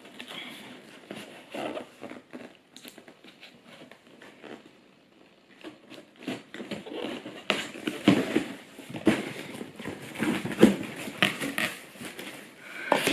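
Scissors cutting through packing tape on a cardboard shipping box, in small clicks and crackles, then the cardboard flaps being pulled open and handled, busier and louder in the second half.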